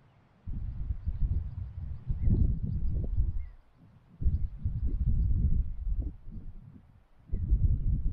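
Wind buffeting the microphone in irregular gusts: a rough low rumble that swells for a second or more at a time, with a brief lull about halfway through and again near the end.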